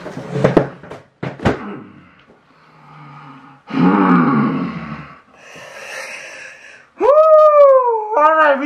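A man laughing and hollering in excitement, with two sharp hits in the first two seconds. It ends in a long, loud howl near the end whose pitch rises and then falls.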